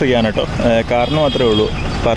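A person talking, over a low background rumble.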